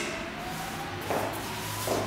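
Quiet room tone with a faint low hum, and a soft, brief scuff of dance shoes on a wooden floor about a second in.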